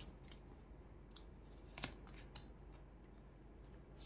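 Faint handling of a deck of oracle cards: a few soft card snaps and rustles as a card is drawn and laid down, the clearest a little under two seconds in.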